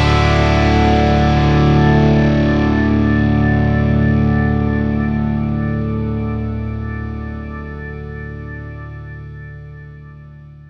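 Punk-rock band's final distorted electric guitar chord, with bass under it, ringing out and slowly fading away at the end of a song.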